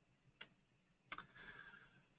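Near silence: room tone with two faint short clicks, the first under half a second in and the second about a second in.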